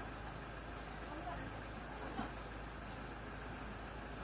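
Steady background hum and hiss, with one faint short sound about two seconds in.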